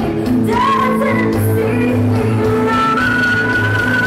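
Live rock band playing, with a woman singing the lead vocal over guitar, bass and drums, holding long notes.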